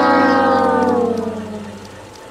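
A comic brass sound effect: one long trombone-like note that slowly slides down in pitch and fades away near the end.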